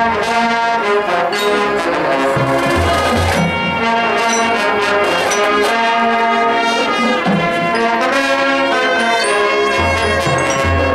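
Marching band brass playing held chords that move from note to note, with strong low notes sounding about three seconds in and again about seven seconds in.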